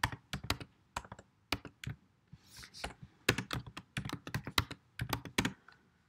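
Typing on a computer keyboard: quick, irregular runs of keystroke clicks with a short pause about two seconds in.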